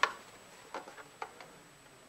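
A few faint clicks and light knocks from the Kato Sound Box controller's case as it is picked up and turned around by hand.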